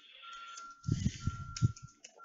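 Keystrokes on a computer keyboard, a short run of taps in the second half, over a faint steady high whine.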